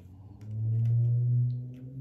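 A man humming a single low, steady "hmm" with his mouth closed for about a second and a half, fading near the end.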